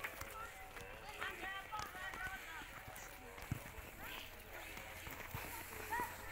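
Faint, distant voices of children calling and shouting across an open football field during training. A single short thump sounds about halfway through.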